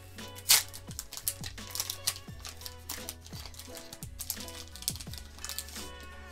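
Foil booster pack wrapper crackling and crinkling as it is torn open, with a sharp crackle about half a second in, over background music.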